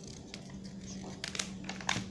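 Glossy paper pages of a printed Avon catalogue being turned by hand: a few brief rustles and crinkles, the sharpest just before the end.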